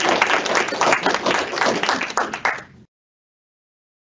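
A small group of people clapping their hands, thinning out and cutting off abruptly about three seconds in.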